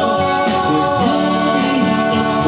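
Live rock band playing: several male voices singing held notes together over electric guitars and drums.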